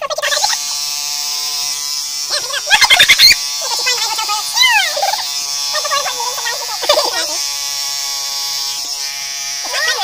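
Electric hair clipper buzzing steadily as it cuts through a beard. High-pitched, chipmunk-like voices and laughter come in over it at several points, and a quick run of loud clicks about three seconds in is the loudest moment.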